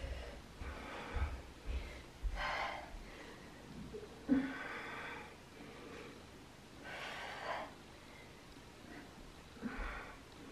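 A woman breathing hard with exertion while pressing a heavy kettlebell overhead: separate audible breaths every couple of seconds, the sharpest and loudest about four seconds in.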